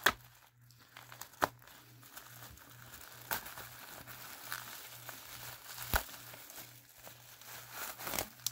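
Plastic bubble wrap crinkling as it is handled and peeled open by hand, with four sharp crackles spread through.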